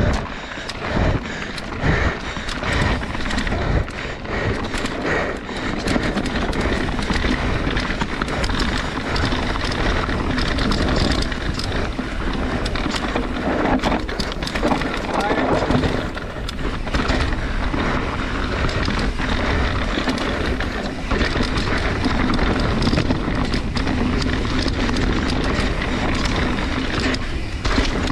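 Mountain bike ridden fast down a rough dirt trail: a constant rush of wind and tyre noise with the rattle of chain and frame, broken by sharp knocks from roots and rocks.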